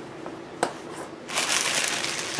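A spice container being handled and shaken as paprika goes into the pot: a light tap, then about the last second a dry rustling shake.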